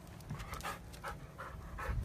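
Dog panting, about four quick breaths a second.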